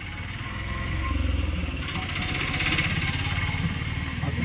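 A motor vehicle's engine running close by, growing louder over the first second and then holding steady.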